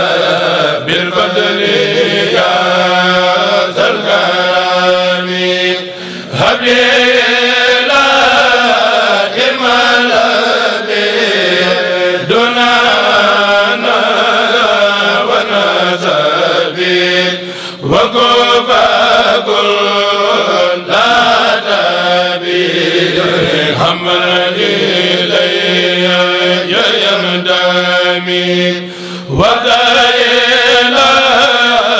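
A kourel, a Mouride choir of men, chanting a khassida together through microphones in long sung phrases, with brief breaks for breath about six, eighteen and twenty-nine seconds in.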